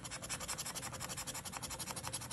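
A coin scratching the silver coating off a paper scratch-off lottery ticket in quick, even back-and-forth strokes, about ten a second.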